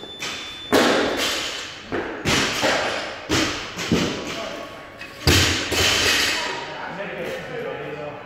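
Barbells loaded with rubber bumper plates dropped onto the gym floor: four heavy thuds, each ringing on briefly, the loudest about a second in and just past five seconds.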